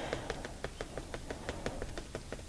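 Marker pen tip tapping quickly and lightly on watercolour paper, about five or six small clicks a second, while dots are being dabbed on.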